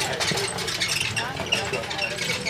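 Indistinct voices of people talking nearby over steady outdoor noise, a low rumble with crackle.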